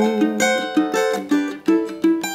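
Cavaquinho strummed in a samba accompaniment, with chords struck about twice a second and ringing on between the sung lines.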